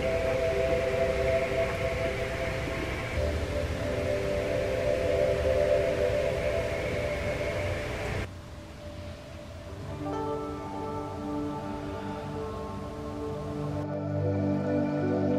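Ambient 'frequency' meditation music of long, steady held tones. About eight seconds in it drops suddenly quieter, and a new set of sustained notes comes in a couple of seconds later.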